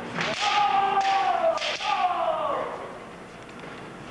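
Kendo bout: a long kiai shout, held for about two seconds and sliding slowly down in pitch, over a few sharp cracks of bamboo shinai strikes. The shout fades out about two and a half seconds in.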